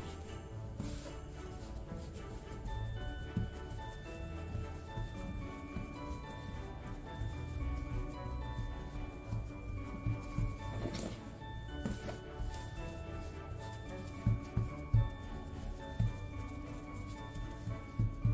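Background music: an upbeat instrumental Christmas hip-hop track, with a melody of short held notes over a steady beat.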